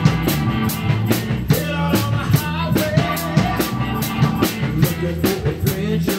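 Live rock band playing a hard-driving rock song, the drum kit keeping a steady beat with cymbal and snare hits about four times a second over bass and guitar.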